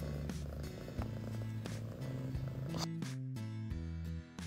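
A cat purring close to the microphone over background music, the purring stopping about three seconds in.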